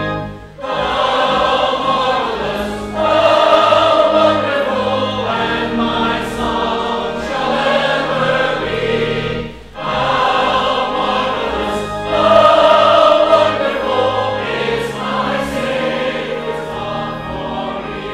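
A church choir and congregation singing a hymn with organ accompaniment, in long sustained phrases broken by two brief pauses, about half a second and about ten seconds in.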